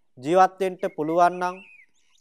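Speech only: a man preaching in Sinhala in a steady, measured voice.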